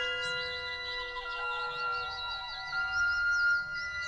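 Ambient background music: long held bell-like tones, with a wavering high line trilling above them.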